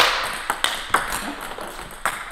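Table tennis ball knocking off rubber bats and the table in a backhand multiball drill: a quick series of sharp clicks about every half second, the first and loudest right at the start ringing briefly in the hall.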